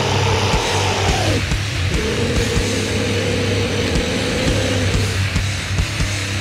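Death metal instrumental passage without vocals: long held guitar notes over a dense low bass drone and steady drum hits, the first held note breaking off about a second and a half in and a second one held for about three seconds.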